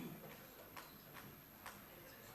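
A few faint, irregular clicks in a near-silent room, with a soft low bump at the very start.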